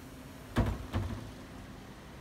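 Two sharp knocks about half a second apart, the first louder, over a faint steady background.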